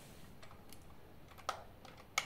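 A few faint, sharp plastic clicks from a CaDA JV8011 remote control with a brick-built steering wheel being handled, the loudest about one and a half seconds in.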